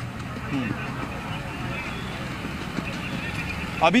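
Outdoor street background: a steady traffic rumble with faint voices in the distance.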